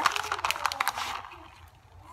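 Plastic bag of shredded cheese crinkling as a hand digs out a handful, a quick run of crackles that dies down after about a second.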